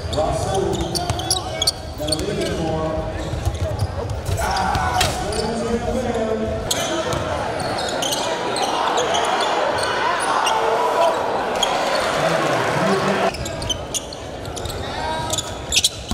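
Game sound in a basketball gym: a ball bouncing on the hardwood amid players' and spectators' voices echoing in the hall, with a fuller crowd noise through the middle.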